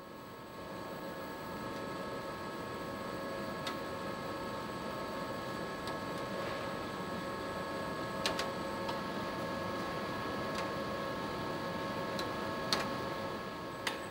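Automated investment-casting shell-building machine running with a steady whir and hum as its linear drive lifts a slurry-coated wax tree out of the slurry tank and moves it. A few faint clicks come about four, eight and thirteen seconds in.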